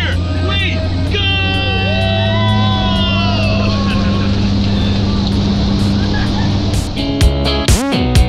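Light aircraft's piston engine and propeller droning steadily inside the cabin as the plane heads onto the runway. Guitar music comes in about seven seconds in.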